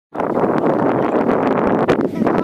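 Wind buffeting the microphone: a loud, steady rush with scattered crackles and a sharper crackle near the end.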